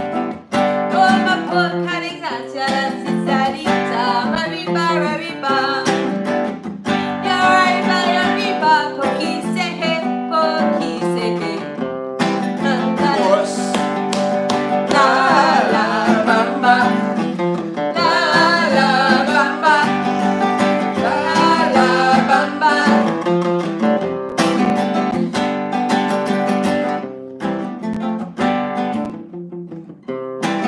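Acoustic guitar played live without a break, picked and strummed, with a voice singing along in places.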